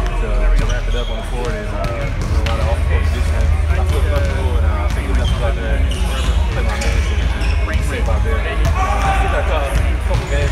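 A man talking in an interview, with basketballs bouncing on a court in the background over a steady low rumble.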